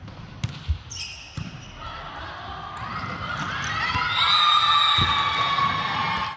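A volleyball served and struck back and forth in a quick rally, heard as a few sharp hits in the first two seconds. It is followed by a sustained, rising high sound that grows louder toward the end as the point is won.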